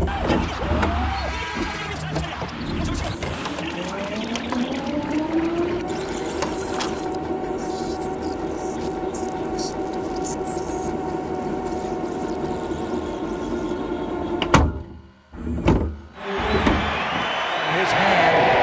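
VHS-style tape-rewind sound effect: a motor-like whine that rises in pitch over the first several seconds, then holds steady. Near the end it cuts out abruptly with a couple of sharp clicks and dropouts.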